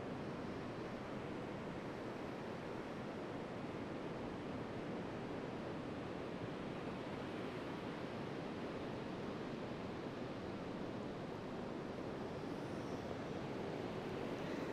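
Steady, even wash of sea surf breaking along a sandy beach.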